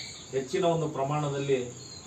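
A man speaking, with a steady high-pitched trill of crickets running underneath.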